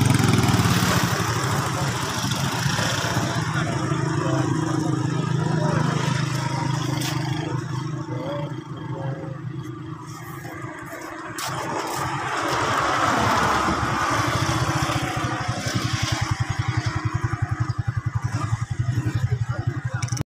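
A motor engine running with a steady low hum that weakens about ten seconds in. Vehicle noise swells about thirteen seconds in, and a fast pulsing engine sound follows near the end.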